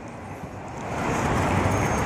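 A car passing on a nearby street, its tyre and engine noise growing steadily louder as it approaches.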